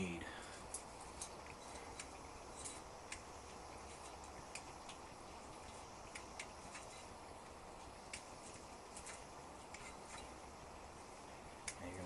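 Faint, scattered light ticks and clicks from steel brake line tubing and a tubing cutter being handled, over a low steady hiss.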